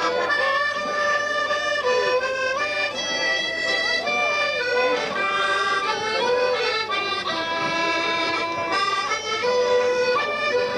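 Fiddle and Paolo Soprani button accordion playing a traditional dance tune together, a continuous melody of held and stepping notes.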